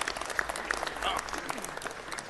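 Crowd applauding: many people clapping at once, with a voice heard faintly under the clapping about a second in.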